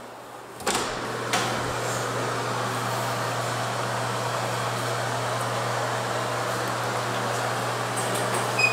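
Bathroom exhaust fan switched on with a click about a second in, then running steadily with a constant motor hum under its airflow noise.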